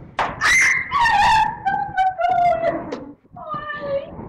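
A series of high-pitched, drawn-out cries, the longest held for more than a second and falling in pitch, with a shorter cry near the end.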